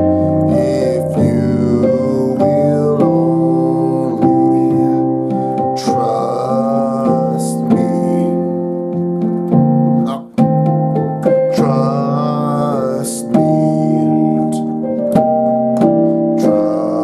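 Piano playing slow, sustained gospel-style chords in rich extended voicings, moving through E-flat, F and B-flat based harmonies and changing every one to two seconds, with a brief drop in sound about ten seconds in.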